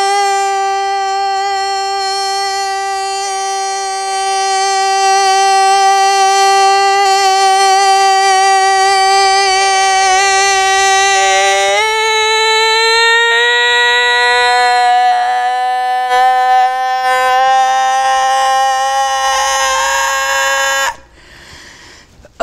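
A man's voice holding one long sung note. It steps up in pitch about twelve seconds in, wavers slightly, and cuts off suddenly about a second before the end.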